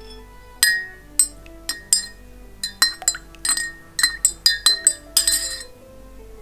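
A spoon clinking against the inside of a mug of milky tea as it is stirred: about a dozen quick, ringing clinks at an uneven pace, coming faster towards the end.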